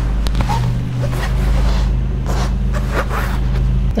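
Crochet hook working yarn through stitches: scratchy rustles of yarn and hook about twice a second, over a steady low hum.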